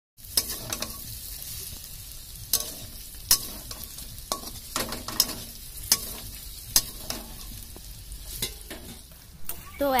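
Spiced potato pieces for aloo dum sizzling as they fry in oil in a metal karahi, stirred with a metal spatula that knocks and scrapes against the pan at irregular intervals.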